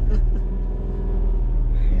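Suzuki S-Presso's small three-cylinder engine running with a steady low hum and road rumble, heard from inside the cabin as the car moves slowly.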